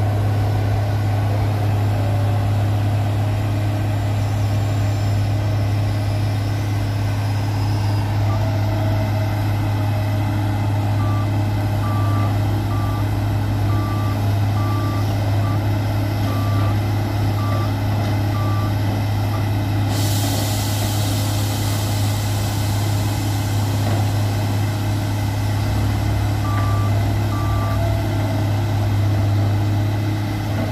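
Heavy diesel machinery of a bored-piling rig running steadily with a deep, even hum. A warning beeper sounds in runs of short beeps, about one or two a second, from about a third of the way in, and again briefly near the end. A steady high hiss joins about two-thirds of the way through.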